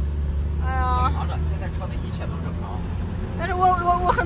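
Steady low engine and road drone heard inside the cab of a light truck on the move. The deepest part of the hum eases about a second and a half in.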